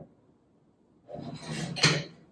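Near silence for about the first second, then a rasping scrape or rub that builds and peaks near the end.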